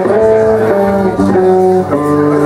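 Live rock band playing, heard through the room: electric guitars and bass holding chords that change every half second or so.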